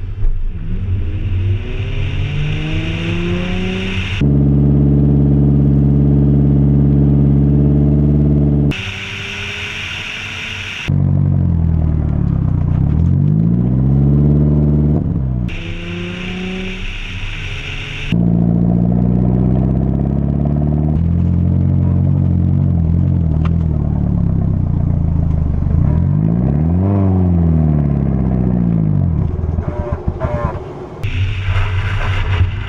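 Nissan 350Z's 3.5-litre V6 driving hard, heard from a camera on the car's flank: the engine pitch climbs and falls as it revs through the gears, with stretches held at steady high revs. The sound changes abruptly several times where clips are cut together.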